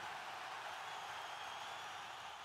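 The fading tail of a cinematic title sound effect: a steady airy hiss with thin, faint high tones, slowly dying away.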